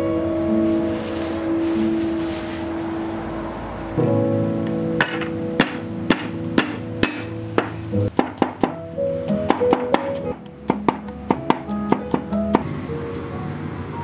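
Broad-bladed kitchen knife chopping garlic cloves on a round wooden chopping board: sharp knocks, spaced about a second apart from about five seconds in, then a quicker run of chops that stops shortly before the end. Background music plays throughout.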